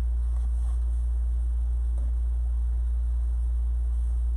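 Steady low electrical hum on the recording, with a faint pulsing buzz just above it, and a few faint rustles near the start and about two seconds in.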